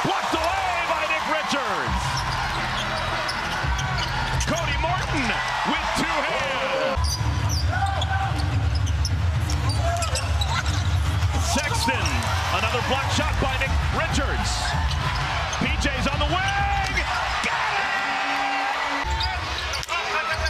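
Game sound of a basketball arena: crowd noise with a basketball being dribbled on the hardwood court. The background changes abruptly several times.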